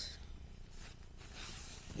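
Soft rustling of a fabric apron being handled and turned over close to the microphone.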